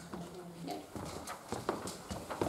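Footsteps on a hard floor close by: a few irregular sharp knocks of shoes, starting about a second and a half in, over a faint murmur of voices.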